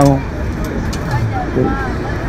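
Steady low rumble of road traffic from an open city street, with faint background voices.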